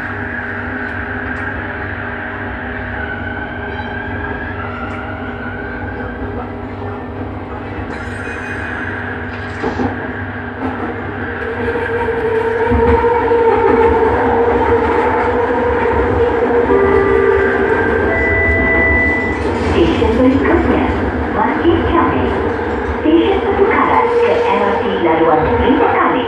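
Bombardier Innovia metro train running, heard from inside the front of the car: a steady rumble under a whine of several steady tones. The whine rises in pitch a few seconds in as the train picks up speed. About halfway through it grows louder.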